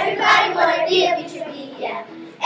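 A group of children singing a chanted song together, louder at first and trailing off toward the end.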